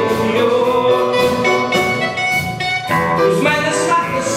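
Live small-band music: saxophone, electric guitar and electronic keyboard playing together, a melody line held over chords.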